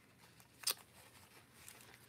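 Quiet handling of paper and card journal pages, with one short, sharp tick a little under a second in.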